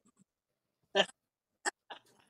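Short bursts of a person's voice in a lull in the conversation: one brief voiced sound about a second in, then two quicker sounds near the end.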